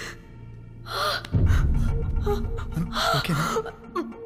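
A woman's tearful gasps and sobbing breaths, a few sharp intakes with a short voiced sob among them, over background film music.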